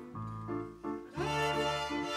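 Student string ensemble playing: violins over a low bass line, the notes short and broken up for the first second, then a fuller sustained chord entering just after a second in.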